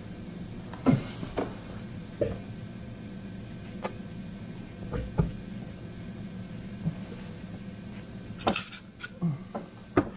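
Irregular clicks and knocks of hand tools and bolts against metal as the rocker cover of a Land Rover Td5 diesel is being bolted down on a new gasket, with a louder cluster of clatter near the end. A faint steady hum runs underneath.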